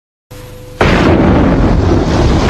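Faint hum and hiss from an old videotape, then, just under a second in, a sudden loud rumbling roar that starts and carries on steadily, like an explosion sound effect.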